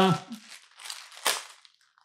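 Plastic packaging crinkling as it is handled, with a louder crackle a little past the middle.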